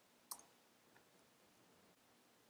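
A single sharp computer-keyboard keystroke click about a third of a second in, with a much fainter tap about a second in, over near-silent room tone.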